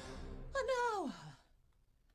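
A person's voice giving a long falling sigh that glides steadily down in pitch over about a second, then dies away to quiet.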